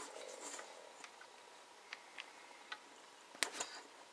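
Light clicks and handling of a smartphone and headphone cable, then a sharper click about three and a half seconds in as the headphone plug is pushed into the HTC One (M8)'s headphone jack.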